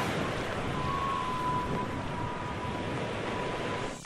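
Steady rushing wind and sea noise, with a faint thin tone held at one pitch through it.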